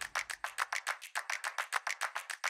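Background percussion music: a fast, even run of sharp wooden-sounding clicks, about eight a second.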